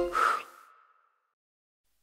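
A short breathy puff of a cartoon child blowing out a birthday candle, fading away within about half a second, followed by dead silence.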